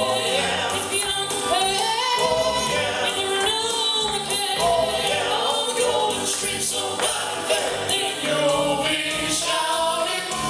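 Male gospel quartet singing in harmony into handheld microphones, holding sustained notes that slide between pitches, with no break in the singing.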